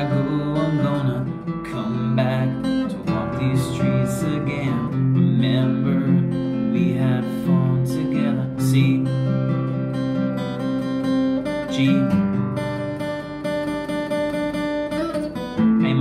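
Maton acoustic guitar strummed in steady chords, working through a chorus progression of C, G, A minor, E minor and F.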